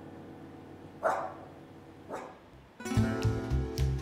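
A small dog barks once about a second in and once more softly about two seconds in, over fading background piano music; rhythmic guitar music starts up near the end.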